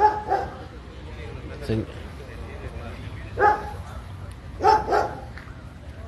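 A dog barking: a few short barks, some in quick pairs, over steady low outdoor background noise.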